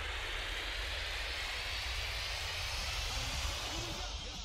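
A rising whoosh: a hiss that climbs steadily in pitch like a passing jet, over a low pulsing bass. It is the transition sound effect of an animated title sting.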